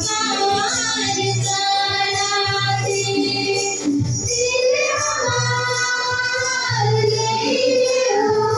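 Voices singing a song in long held notes over instrumental accompaniment, with a low bass note recurring about once a second.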